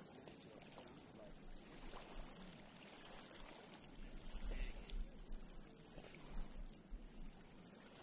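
Small lake waves lapping on a pebble shore, faint and steady. A low rumble of wind on the microphone comes in about four seconds in.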